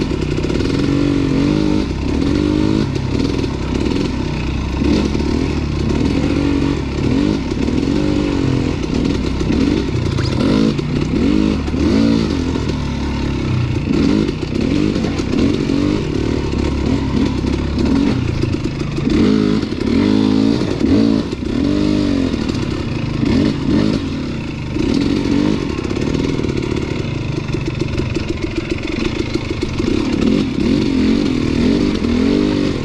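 KTM 250 dirt bike engine revving up and down continuously with short throttle changes while riding a rough trail, with rattling from the bike over the rocks.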